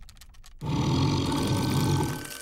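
A loud, low growling sound effect starts about half a second in and holds at an even level.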